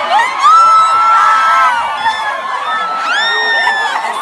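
Excited crowd screaming and cheering. One long high-pitched scream rises at the start and is held for over a second, and another rising scream cuts through about three seconds in.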